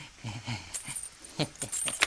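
A man's short, low, breathy snickering, a few quick pulses, followed by a couple of sharp clicks.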